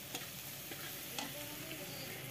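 Onions and ginger-garlic paste sizzling in oil in a steel kadai while a metal spatula stirs them, with a couple of short knocks of the spatula against the pan.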